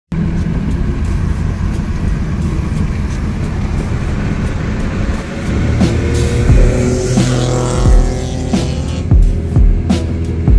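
A Jaguar car driving at speed, heard from inside the cabin as steady engine and road noise. About halfway through, music with deep bass thumps comes in over it.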